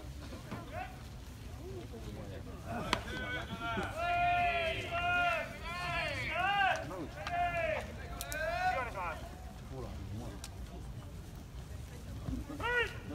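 A voice calling out over the ballpark in long, drawn-out rising-and-falling phrases from about three to nine seconds in, over a steady low background rumble. There is one sharp knock just before the calling starts.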